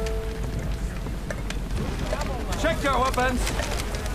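Film soundtrack of steady rain with a low rumble underneath and a held music note fading out at the start. About two seconds in, a man shouts an order.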